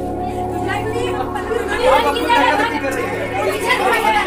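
Several people talking over one another in lively group chatter, with steady background music beneath.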